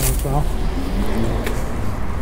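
Low, steady rumble of street traffic with a faint engine hum, after a short spoken word at the start.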